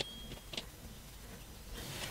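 Faint handling sounds of fingers knotting a strand of yarn: a soft tick at the start and another about half a second in, over quiet room tone.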